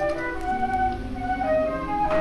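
Background music: a flute playing a slow melody of a few long, held notes.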